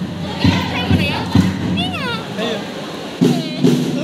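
Jazz chant performance: three heavy thumps about half a second apart, then high shrieks, and a group of voices chanting loudly in unison near the end.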